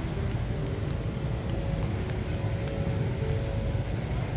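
Steady ambience of a large airport departure hall: an even low rumble of air handling and distant activity, with a few faint held tones in the middle range.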